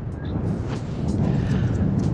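Strong wind blowing across the microphone, a steady low rumble with a few faint ticks above it.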